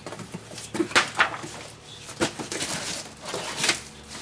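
Rustling and clacking as craft supplies are rummaged through and a plastic blister pack of ink pads is picked up, a handful of irregular short noises.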